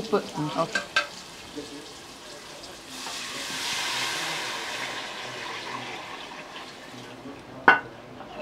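Tamarind water poured into a pot of hot frying masala sizzles, starting about three seconds in and slowly fading. Near the end, a metal ladle clinks once against the pot.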